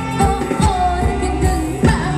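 Thai ramwong dance music from a live band: a singer holding drawn-out, bending notes over a steady drum beat and bass.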